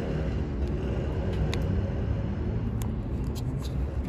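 Steady low rumble of outdoor background noise, like distant road traffic, with a few faint ticks.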